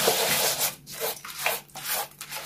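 A hand rubbing a grainy butter, sugar and oil mixture against the sides of a large glazed clay bowl, in rasping strokes with short breaks about twice a second.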